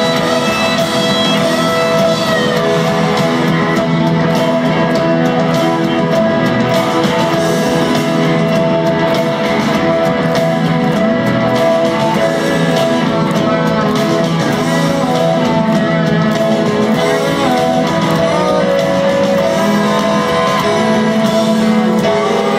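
Live rock band playing a loud, sustained passage, electric guitars to the fore over drums and bass.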